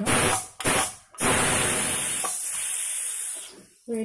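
Steam hissing out of the vent pipe of a Prestige Popular aluminium pressure cooker as its weight is lifted off to let the pressure out. There are two short spurts, then a longer hiss that dies away over about two seconds as the pressure drops.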